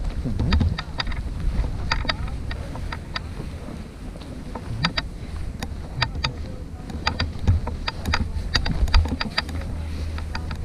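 Wind rumbling on an action-camera microphone, with many short, sharp clicks scattered through it, several a second at times.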